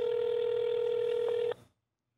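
One ring of a phone call's ringback tone played over the phone's speakerphone: a steady tone that stops about one and a half seconds in. It is the sign that the called phone is ringing and has not yet been answered.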